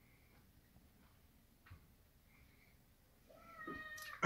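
Near silence with a few faint ticks; near the end a high-pitched, drawn-out call swells up and holds a steady pitch.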